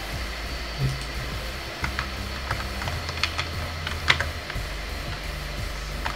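A handful of separate clicks from a computer mouse and keyboard, bunched about two to four seconds in, over a low steady hum.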